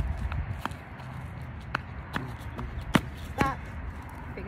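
A child hopping in flip-flops on a concrete sidewalk: a handful of sharp, irregular slaps, the loudest about three seconds in. A low steady rumble runs underneath.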